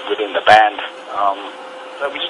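Speech only: a man talking, with a faint steady hum underneath.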